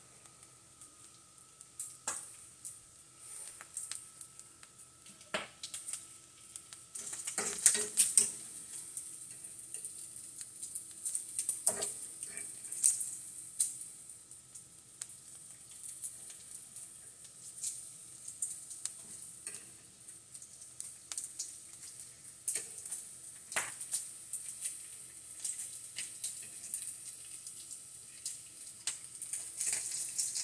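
Bacon frying in a skillet, a steady sizzle that grows louder about seven seconds in, with the clicks and scrapes of a fork turning the strips against the pan.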